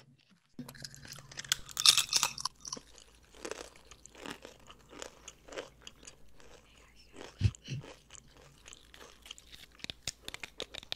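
Slow, close-miked eating of a very crunchy chip: a loud crackling bite about two seconds in, then a run of smaller chewing crunches.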